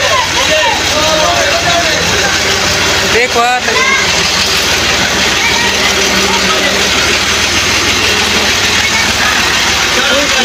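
Tractor engine running steadily close by, a loud continuous drone, with brief voices over it near the start and about three seconds in.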